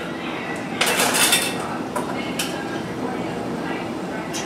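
Metal canning-jar lids and screw bands clinking as they are handled and set onto glass jars, with a burst of jingling clatter about a second in and a few single clicks after.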